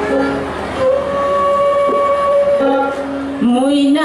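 Instrumental opening of a Bhawaiya folk song, with long, steady held melody notes. Near the end a woman's singing voice comes in, sliding up into a long wavering note.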